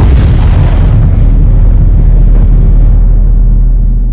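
A sudden heavy boom-like hit, then a deep steady low rumble that rings on while its higher part slowly fades, dying away just after.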